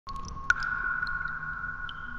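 Logo intro sound effect: a steady ringing tone, joined about half a second in by a sharp ping that rings on, with a few small high blips scattered around it.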